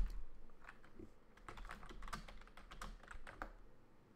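Typing on a computer keyboard: a quick, uneven run of key clicks that stops about half a second before the end, with a louder click at the very start.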